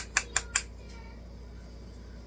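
Four quick light taps about a fifth of a second apart: a makeup brush knocked against the powder bronzer compact to load it and tap off the excess.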